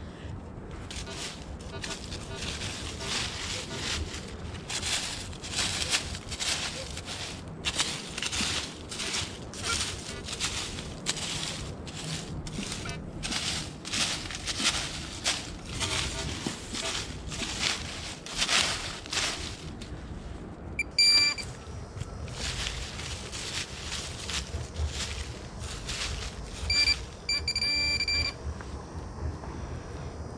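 Repeated scraping and rustling through dry leaf litter and soil while searching for a target. Later comes a quick run of high electronic beeps from a Minelab Pro-Find 35 pinpointer, then near the end a steady beep of about two seconds as it sits over a buried metal target, a screw.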